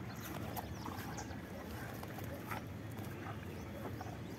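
A bull eating from a bucket: faint, irregular chewing and mouthing noises with a few soft clicks.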